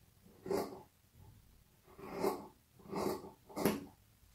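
Fabric scissors cutting through a double layer of silk satin, four separate snips, the last the loudest.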